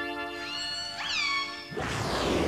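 Killer whale calls: two calls about half a second apart, each rising then falling in pitch, over a held music chord. A rush of noise comes in near the end.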